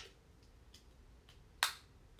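A single sharp click about one and a half seconds in, preceded by a couple of faint ticks.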